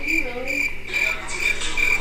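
A steady run of short, high chirps at one pitch, about three a second. A man's voice hums briefly under them near the start.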